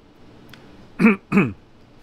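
A man clearing his throat: two short, loud bursts in quick succession about a second in.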